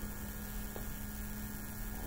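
Steady low electrical hum, a single unchanging tone over faint background hiss.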